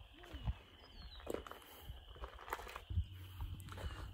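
Faint, irregular footsteps crunching on gravel, a few separate steps, with a low rumble joining near the end.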